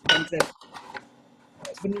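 Two sharp clinks in quick succession, each with a short ring, then a woman's voice briefly near the end.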